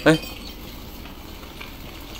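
A large herd of goats walking on a dirt road: a steady crackling shuffle of many hooves, with a short voice sound right at the start.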